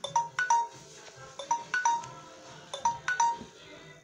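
Smartphone playing a chiming ringtone melody: a short phrase of bell-like notes that repeats about every 1.3 seconds.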